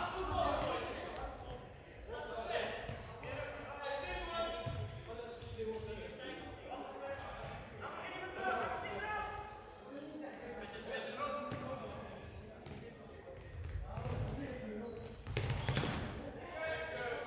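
Futsal ball being kicked and bouncing on a hard sports-hall floor, sharp knocks scattered through, with players' shouts and calls echoing in the large hall. A louder flurry of ball hits and shouting comes near the end.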